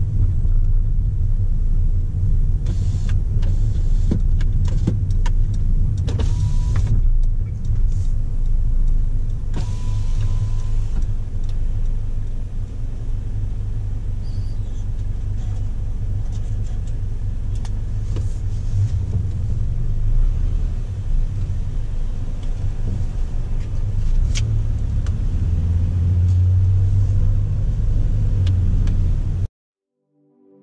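Car engine and tyre rumble heard from inside the cabin as the car drives slowly, steady and low throughout. A few short noisier stretches come in the first third, with two brief beeps among them.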